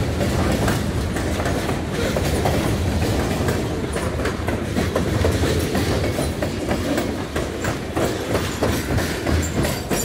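Freight cars (covered hoppers and tank cars) rolling past close by: a steady rumble, with wheels clicking irregularly over rail joints.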